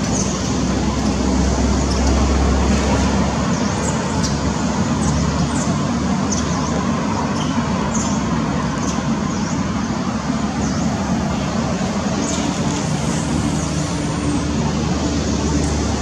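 Steady rumble of passing road traffic, with short high chirps scattered through it.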